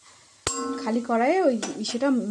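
A metal spatula strikes an empty metal kadai once about half a second in, a sharp clink with a short metallic ring. A woman's voice follows right after.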